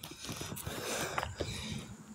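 Faint handling noise and light scattered knocks from a phone camera moving while walking, over a low outdoor hiss.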